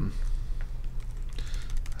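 Typing on a computer keyboard: a quick run of key clicks in the second half, over a steady low hum.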